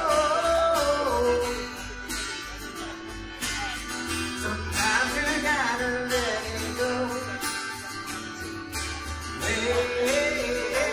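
Live acoustic string band music: upright bass, strummed acoustic guitar and fiddle playing together, with the melody sliding between notes.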